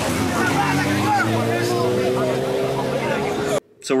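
Car engine at a drag strip, its pitch climbing slowly and steadily, with crowd voices in the background; it cuts off suddenly near the end.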